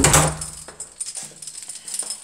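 A sudden thump, then a light metallic jingling and handling rustle that fades over the next second.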